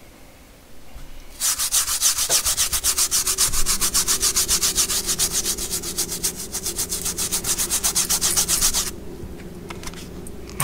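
Small stiff-bristled brush scrubbing wet upholstery fabric soaked with cleaner, in rapid, even back-and-forth strokes that start about a second and a half in and stop shortly before the end.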